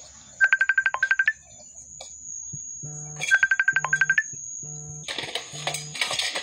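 A phone ringtone trilling: two bursts of rapid beeps at one pitch, each about a second long and about three seconds apart, with a low repeating tone joining in after the second burst. A clattering noise starts near the end.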